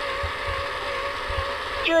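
Toy robot coin bank's small built-in speaker sounding one long electronic tone with a slight wobble and a buzzy edge. It cuts off abruptly near the end.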